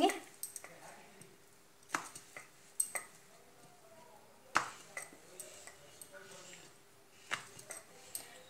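Wooden rolling pin working a roti on a stone rolling board: scattered light knocks and clicks as the pin rolls, lifts and comes down on the stone, with a faint steady hum underneath.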